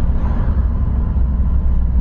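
Steady low rumble of a moving car heard from inside its cabin: engine and road noise while driving.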